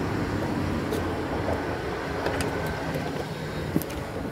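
Steady low rumble of road traffic, with a single light click near the end.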